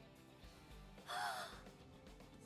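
A short, startled gasp in a young woman's voice about a second in, over faint background score.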